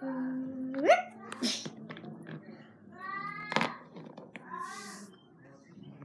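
A child's wordless singsong voice: a held hum that glides up in pitch, then a few short, high, arching vocal calls. A couple of sharp clicks fall in between, about one and a half and three and a half seconds in.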